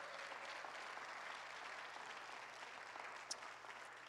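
Congregation applauding, steady and fairly faint, thinning out toward the end.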